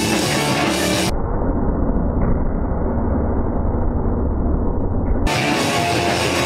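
Punk band playing loud distorted electric guitars and drums. About a second in the sound turns muffled as all its highs are cut away, and the full, bright sound returns shortly before the end.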